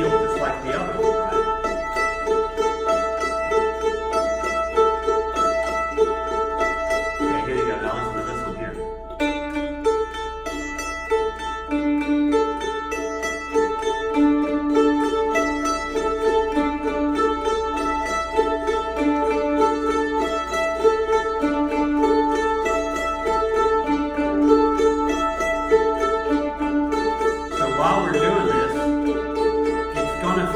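Mandolin picked in a steady, even stream of alternating down-up strokes, crossing from string to string (cross picking) so that the notes roll together and ring over one another. A voice is briefly heard about eight seconds in and again near the end.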